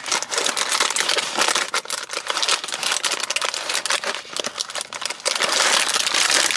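Sealed plastic parts bags of toy building bricks crinkling and crackling as they are picked up and handled, with denser, louder crinkling near the end.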